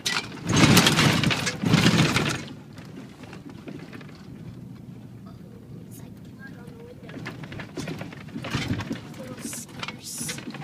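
Inside a slowly moving vehicle's cabin: a steady low engine and road hum with light rattles. Two loud noisy bursts come in the first two and a half seconds, and smaller ones near the end.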